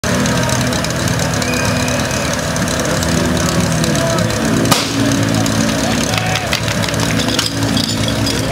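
Spectators shouting and cheering, with a small engine running underneath. A single sharp crack comes a little under five seconds in.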